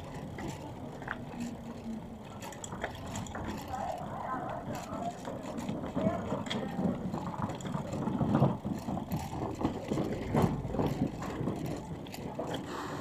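Street ambience: indistinct voices of passers-by and irregular rattling of wheels over the stone paving, louder in the second half.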